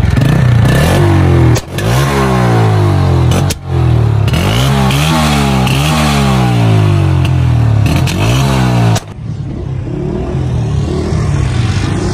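Honda motorcycle's single-cylinder engine being revved hard in repeated blips, its pitch climbing and falling again and again, before stopping about nine seconds in.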